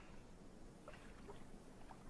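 Near silence: a faint steady hiss with a few faint, brief ticks.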